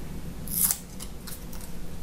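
A single-edge razor blade being slid out of its paper sleeve: a short scraping rustle about half a second in, then a few faint light ticks.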